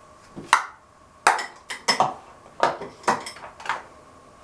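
Small hard objects clicking and clattering, about eight sharp knocks spread over three seconds, some with a short ring: makeup tools and containers being handled and set down.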